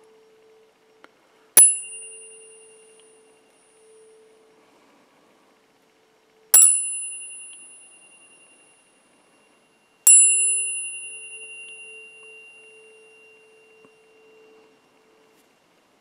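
Metal tuning forks struck three times, each a sharp clink followed by a bright high ring that fades away over a few seconds. Under the strikes, a fork's low, steady pure tone hums on.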